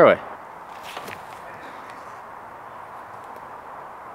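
Steady outdoor background hiss, with a few faint footsteps on a dirt path about half a second to a second in.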